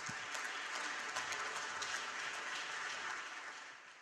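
Audience applauding, many hands clapping together, fading out near the end.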